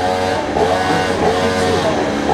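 An engine running, its pitch rising and falling every second or so over a steady low hum.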